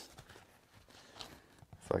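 Near quiet with a few faint rustles and light ticks from soft leather being handled and folded open, then a man's voice starts near the end.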